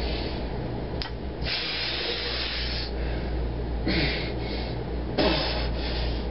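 Hard, hissing exhalations through the teeth from a man straining to lift a 100-pound bar one-handed. A long hiss comes first, then two shorter ones, each with a falling grunt. A sharp click comes about a second in.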